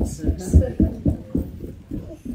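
Muffled, indistinct voices pulsing several times a second, with almost nothing in the upper range, so no words come through.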